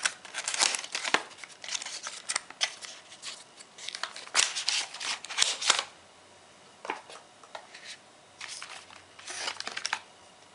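A cardboard retail box being opened by hand: card tabs and the inner card tray scrape and rustle as the tray is slid out. The scraping is busiest for the first several seconds, goes quiet for a couple of seconds, then resumes briefly near the end.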